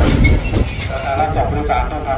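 Passenger train rolling slowly into a station: a low rumble from the carriage and a thin, high wheel and brake squeal that fades within the first second as it slows, followed by a man's voice over the running train.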